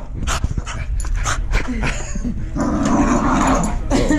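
Cavapoo dog growling playfully while worrying a toy during tug-of-war play, a longer growl building about two and a half seconds in, with scattered short clicks and knocks throughout.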